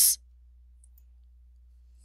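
The last of a spoken word, then a quiet pause with only a low, steady hum.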